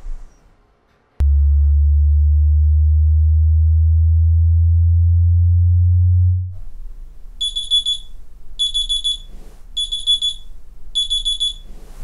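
A loud, deep low drone comes in suddenly just after a second and fades out about six and a half seconds in. Then an alarm clock beeps four times, high-pitched, each beep just over half a second long and about a second apart.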